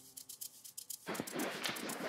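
Background film score in a lull between its deep beats: a fast, light high ticking carries on, and a soft rushing noise swells about a second in.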